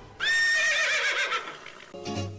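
A horse whinnying: one loud call that starts abruptly, quavers and falls in pitch, and fades out after about a second and a half.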